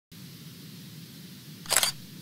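Logo-sting sound effect for a news intro: one short, sharp burst of noise lasting about a third of a second near the end, over a faint low hum.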